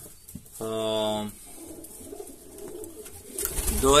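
Domestic pigeons cooing in a loft. Near the end there is low rumbling and handling clatter.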